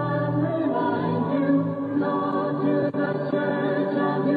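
Music of voices singing long held notes together, like a choir, on a muffled recording with no treble.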